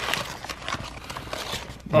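Grease-soaked butcher paper being unfolded by hand, crinkling and rustling with small irregular crackles.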